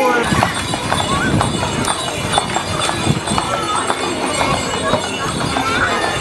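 Belgian draft horse's hooves clip-clopping on a paved street as it pulls a carriage, a run of uneven sharp knocks, with people chattering alongside.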